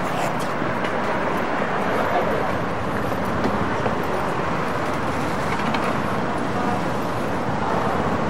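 Steady rushing noise of road traffic on a multi-lane city street, even in level throughout with no sharp knocks.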